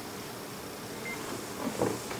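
Steady room tone, a low hum and hiss, with a brief high beep about a second in and a short low sound near the end.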